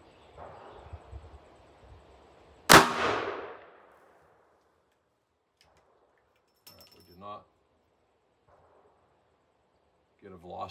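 A single .44 Magnum shot from a Ruger Super Redhawk revolver with a 9.5-inch barrel, about three seconds in, its report fading away over about a second. A few seconds later come a few light metallic clicks as the revolver's cylinder is opened.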